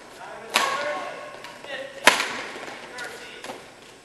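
Badminton racket strikes on a shuttlecock during a rally, echoing in a large hall. There are two loud, sharp hits about a second and a half apart, the second one the loudest, with fainter hits later and voices in between.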